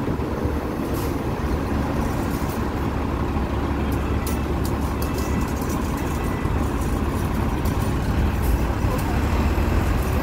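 Steady low rumble of street traffic, with buses and a minibus running close by at the kerb. A scatter of faint high clicks comes through in the middle.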